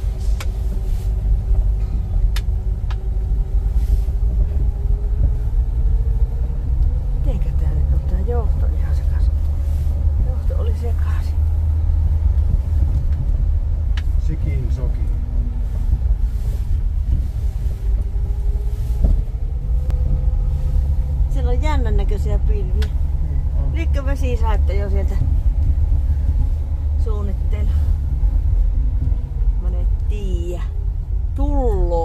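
Rambler American car driving on a gravel road, heard from inside the cabin: a steady low engine and road rumble, with the engine note rising slowly twice as the car picks up speed.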